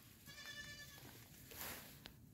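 One faint, high bleat from a flock animal, lasting under a second.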